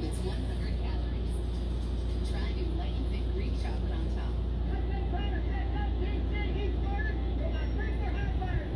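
Husky puppies play-fighting, giving short, repeated whimpers and squeaks that get more frequent in the second half, over a steady low hum.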